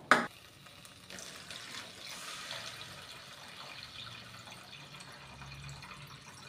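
Water being poured into a steel pan of fried masala paste, a steady splashing pour that starts about a second in and runs on for several seconds. A short knock, the loudest sound, comes right at the start.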